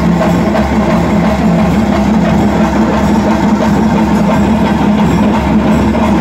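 Loud live ritual music: dense, quick drumbeats over a steady held tone that does not break.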